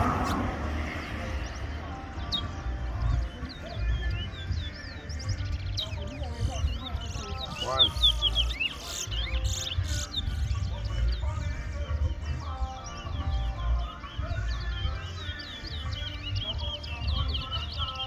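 Caged towa-towas (chestnut-bellied seed finches) singing against each other, one quick phrase of short whistled notes after another, the song coming thicker from about halfway through.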